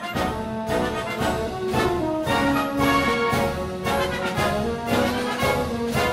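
Orchestral background music led by brass, with held chords changing every half second or so.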